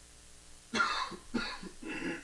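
A person coughing several times in quick succession, starting about three-quarters of a second in.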